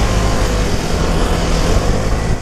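Vespa Primavera 150 scooter being ridden over cobblestones. The steady drone of its single-cylinder four-stroke engine mixes with tyre rumble and wind on the microphone.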